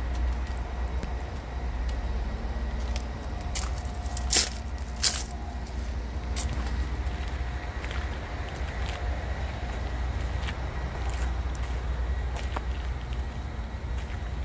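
Steady low outdoor rumble with no voices, broken by two sharp clicks about four and five seconds in.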